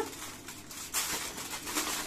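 Aluminium foil crinkling as hands press and shape it into a bowl: a continuous run of crisp crackles.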